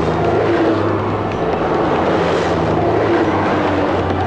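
Cars and a van driving past: a steady engine hum with tyre noise, and a faint whoosh about two and a half seconds in.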